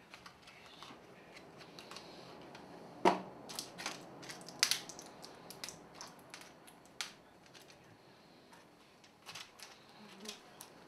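Tablets being pressed out of a blister pack: foil popping and plastic crackling in irregular sharp clicks, the loudest about three seconds in and again near five seconds.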